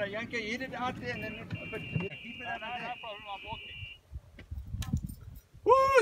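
A golf ball struck out of a sand bunker with a squash racket, a brief sharp hit about three-quarters of the way through, then a loud whoop. Quiet voices come first, and a steady high tone is held for a few seconds in the middle.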